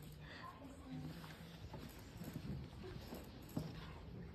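Faint murmur of voices with scattered light knocks of small footsteps on the stage, and one sharper knock near the end.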